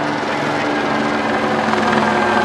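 Helicopter hovering: a loud, steady drone with a rapid rotor chop.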